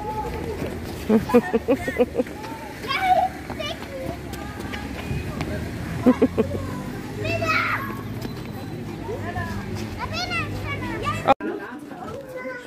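Young children's voices at play outdoors: short high calls and squeals from a toddler, with other children in the background. The sound cuts off suddenly near the end.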